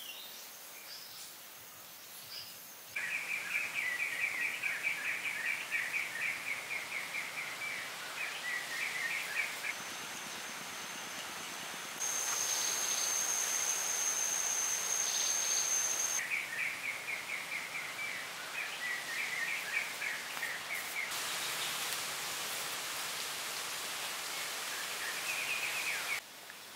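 Outdoor forest ambience: a steady high hiss of background insects. Rapid repeated high chirping runs through two long stretches, and a steady high whine sounds for a few seconds in the middle. The level jumps abruptly at several points where takes are cut together.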